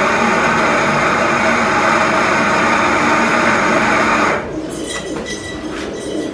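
Electric espresso grinder running steadily as it grinds coffee beans into a portafilter, then cutting off about four seconds in.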